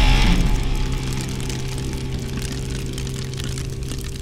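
Intro sound effect of an engine running steadily with a low hum, loudest in the first half-second and then settling slightly.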